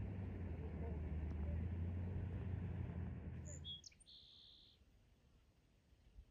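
A motorboat's engine running out on the water, a steady low drone that stops abruptly a little under four seconds in. A few brief high chirps follow.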